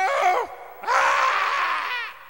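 Penguin calls: a short squawk that rises and falls in pitch at the start, then a longer, rougher cry from about a second in.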